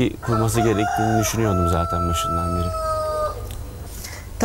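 A rooster crowing once: a long call that rises, then holds a slightly falling note for nearly two seconds and stops about three seconds in.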